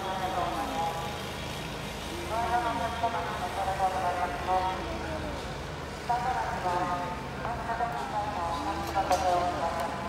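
Voices calling out across a ballpark in several drawn-out phrases, over a steady low engine drone.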